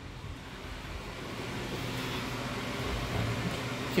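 Steady air noise from a running fan, an even hiss with a low hum, growing gradually louder over the few seconds.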